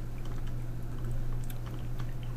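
Faint, scattered clicks of a computer mouse's scroll wheel as a web page is scrolled, over a steady low electrical hum.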